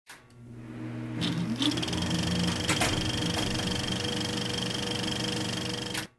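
Channel intro sound: a steady mechanical hum with a rapid, fine rattle, fading in over the first second or so, with a short rising glide and a sharp click early on, then cutting off abruptly at the end.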